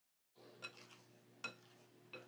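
Near silence, broken by two faint light clicks under a second apart, as fingers knock against a glass mixing bowl while pulling dough away from its sides.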